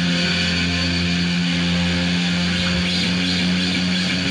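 A band's closing chord held as a steady, distorted drone on electric guitar and bass: sustained low tones under a dense noisy wash.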